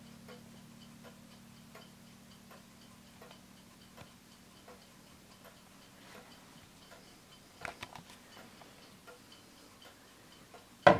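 Winterhalder & Hofmeier drop dial regulator wall clock's deadbeat escapement ticking faintly and evenly, about four ticks every three seconds. A brief cluster of small knocks comes about three-quarters of the way through.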